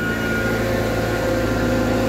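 Tata Hitachi Zaxis 120 tracked excavator's diesel engine running steadily at close range, a low drone with a steady higher whine over it.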